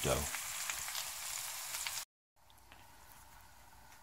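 Beef roast and vegetables sizzling in an enameled cast-iron skillet, with fine crackling. The sizzle cuts off suddenly about halfway, leaving only a faint hiss.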